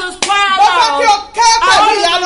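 A woman singing loudly with held, bending notes while clapping her hands, with one sharp clap just after the start.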